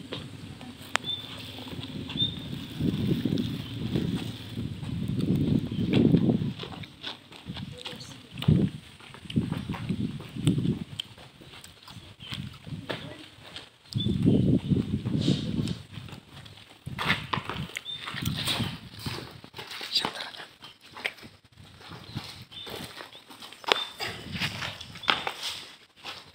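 Indistinct voices of a group of students talking, coming and going in loud patches. Short high chirps sound now and then, and a run of sharp clicks comes in the second half.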